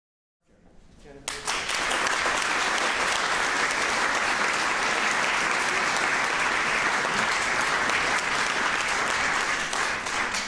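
Audience applauding: dense, steady clapping that rises quickly about a second in and starts to die away near the end.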